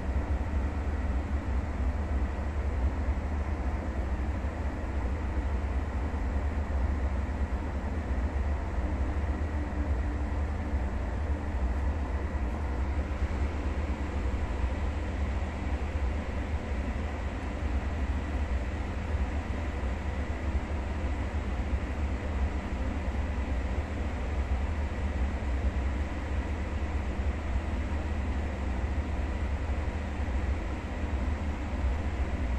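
Pot of sinigang broth with greens at a steady boil on a gas burner: a continuous low rumble and bubbling with no change.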